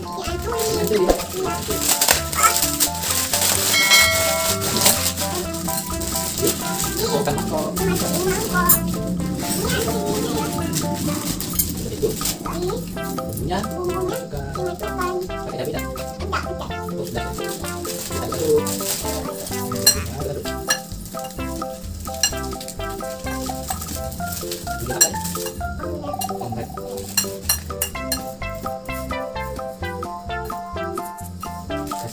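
Background music playing over the crackle of a plastic instant-noodle packet and dry instant noodles being broken up and crumbling into a bowl.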